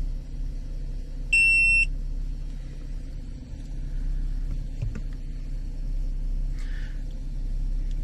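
Car engine idling steadily, heard from inside the cabin as a low hum. About one and a half seconds in, a single short, high electronic beep sounds for about half a second.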